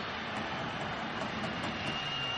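Steady crowd noise in a football stadium, heard through an old television broadcast.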